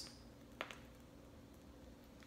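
Near silence: quiet kitchen room tone, with one faint short click a little over half a second in.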